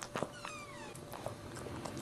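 Newborn Maltese puppy giving one high, mewing squeal that falls in pitch over about half a second. Short wet clicks and rustles come from the mother dog licking it.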